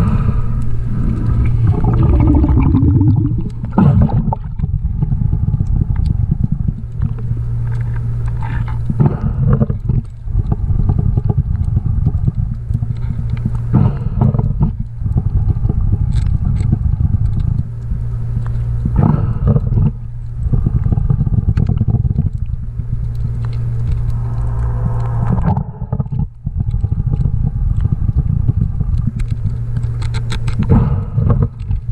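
Underwater sound of a scuba diver breathing through a regulator, with a surge of exhaled bubbles about every five seconds over a steady low hum.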